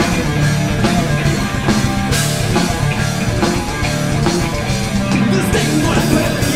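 Hard rock band playing live: electric guitars over a drum kit, loud and continuous.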